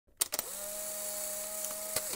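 Intro sound effect: two quick clicks, then a steady hissing hum with a held tone, ending in another click.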